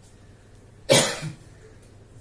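A man coughs once, a single short, sharp cough about a second in.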